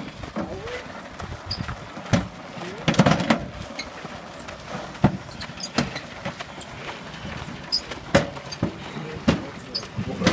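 A riding lawn mower on knobby tyres, its differential case broken, being pushed by hand over a gravel alley: tyres crunching with irregular knocks and clunks from the mower. Small birds chirp throughout.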